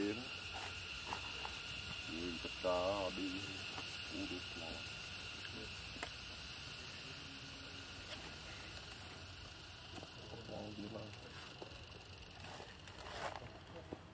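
A few short, wavering vocal calls, the loudest about three seconds in, over a steady high-pitched background hum.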